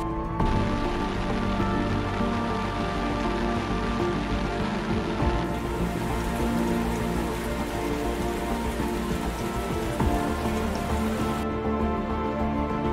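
Steady rain falling, with held notes of background music underneath.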